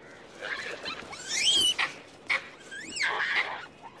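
Monkeys screaming in a fight, with two loud shrill shrieks that rise and fall in pitch, the first about a second and a half in and the second near three seconds.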